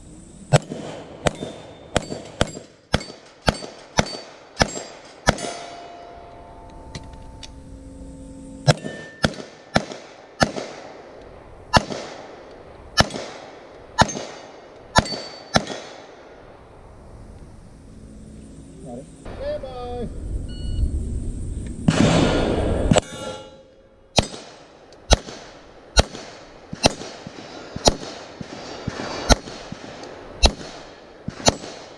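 Strings of quick handgun shots, about two a second, each followed by the ringing clang of steel plate targets being hit, with pauses of a few seconds between strings. A louder stretch of noise falls about two-thirds of the way in.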